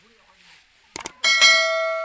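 Subscribe-button overlay sound effect: a mouse click about a second in, then a bright notification bell chime of several ringing tones that fades away slowly.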